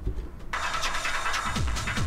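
Techno played from vinyl in a turntable DJ mix. About half a second in the track opens into its full, bright sound over a bass line, with a kick drum underneath: the incoming record has been released on the downbeat to land with the kick.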